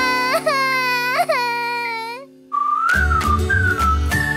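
Cartoon characters crying out in dismay: a high, wavering wail that lasts about two seconds. It breaks off, and a thin whistle-like tune comes in, with music and a bass line joining about three seconds in.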